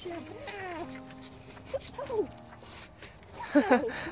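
A person's voice with gliding pitch, in short wordless calls rather than clear speech, louder near the end.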